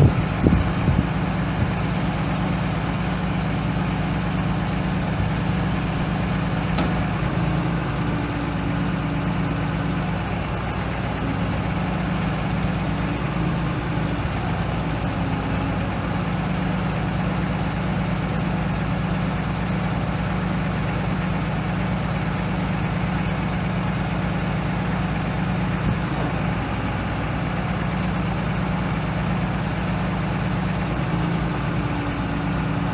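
The 6.7-litre inline-six turbo diesel of a 2010 Dodge Ram 5500 bucket truck idling steadily, with a few knocks in the first second.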